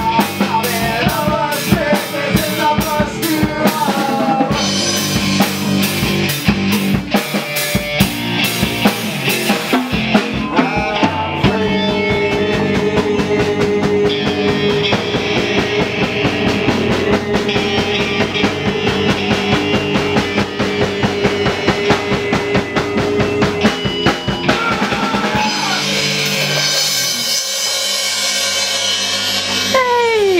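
A rock band playing live in a small room: drum kit, electric guitar and a singer. The drums drop out a few seconds before the end, leaving the instruments ringing, and a falling pitch glide closes the song.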